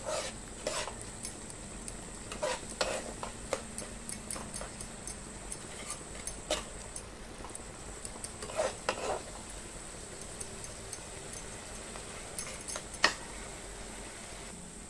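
A spatula stirs and scrapes thick masala in a non-stick kadai, with short scrapes and taps every second or few, the loudest near the end. Under it the wet masala sizzles faintly as it cooks.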